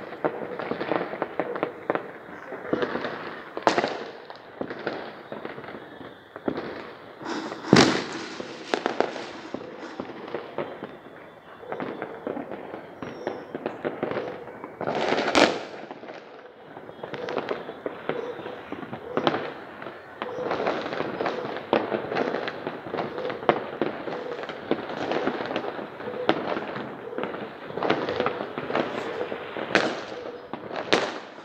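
Many fireworks going off, a steady crackle of overlapping bangs and pops, with two louder booms about eight seconds in and again about fifteen seconds in.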